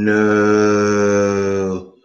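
A man's low voice holding one long, droning note, a drawn-out "nooo" that sinks slightly in pitch before it stops just short of two seconds in.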